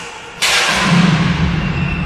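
A sudden loud bang about half a second in, followed by a sustained rushing, rumbling noise.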